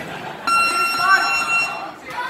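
Boxing gym round-timer buzzer sounding one long, steady electronic tone of about a second and a half, starting about half a second in, with voices underneath. It likely signals the end of the sparring round.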